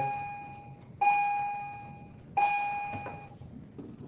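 An electronic chime rings three times at the same pitch, a little over a second apart, each tone starting sharply and fading away.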